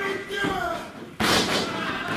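Wrestler's body crashing face-first onto the wrestling ring's canvas about a second in: one sudden loud slam with a short rattling tail from the ring.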